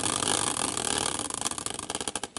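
A hand-spun caster wheel whirring on its bearings. The whir breaks into clicks that slow down near the end as the wheel coasts toward a stop.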